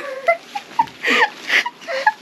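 A woman laughing in a few short, breathy bursts.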